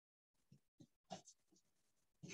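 Faint strokes of a duster wiping a whiteboard: several short rubs in the first second and a half.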